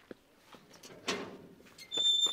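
A gate being shut: one noisy scrape about a second in, followed by a few light knocks.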